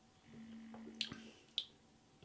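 Faint mouth sounds of someone sipping and swallowing beer: two small sharp clicks of lips and throat, about a second in and again half a second later, over a faint low hum.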